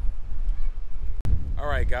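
A steady low outdoor rumble, cut off abruptly a little over a second in, followed by a man's voice starting to speak.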